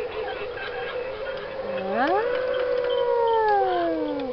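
Wolf howl from a Halloween sound-effects track: it starts about two seconds in, rises quickly, holds, then slides slowly down. A steady droning tone runs under it.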